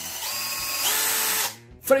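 Cordless drill-driver run on its variable-speed trigger: the motor whine climbs in pitch in two steps as the trigger is squeezed further. About one and a half seconds in it cuts off suddenly as the instant electric brake stops the chuck.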